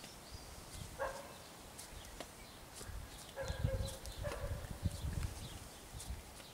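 Faint garden ambience with scattered footsteps and clicks, a few short pitched calls and high chirps, likely birds, and a low rumble in the middle that is the loudest part.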